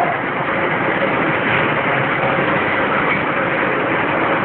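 Steady mechanical noise of a flat screen printing machine running, an even hum and rush with no clear rhythm.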